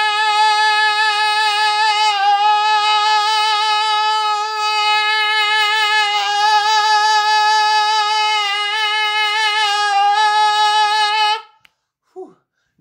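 A man's voice holding one long, steady, bright sung note with strong overtones, wavering slightly in pitch and stopping shortly before the end. It is a demonstration of the cricoarytenoid lateralis 'chest voice sound': the vocal cords are tensed so they clap harder together, giving a sharper, louder tone that resembles chest voice.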